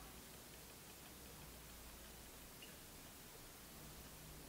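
Near silence: room tone, with one faint tick about two and a half seconds in.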